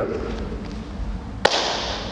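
Hands smacking together as they lock into a gable grip: one sharp slap about one and a half seconds in, followed by a short hiss.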